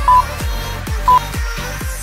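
Electronic dance background music with a steady kick drum a little over twice a second. A short high beep sounds about once a second, in step with a countdown timer.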